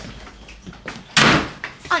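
A door shuts with a single loud bang about a second in, dying away within half a second.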